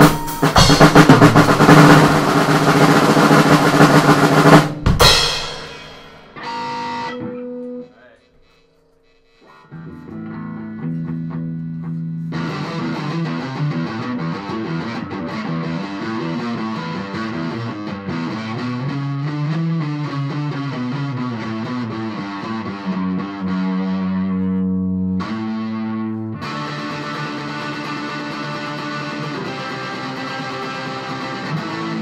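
A drum kit played hard for about the first five seconds, ending on a crash that rings out. Then an electric guitar solo takes over: a few held notes, a short pause, and a long run of lead lines and riffs.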